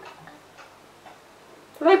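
Faint light clicks and rustling as a small plastic toy doll and its cloth wrap are handled, in a quiet room; a woman's voice starts near the end.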